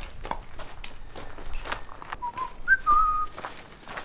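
A person whistling a short three-note phrase about two seconds in: a low note, a brief high note, then a held middle note. Faint rustling of plastic wrap as a wrapped steel wheel is handled.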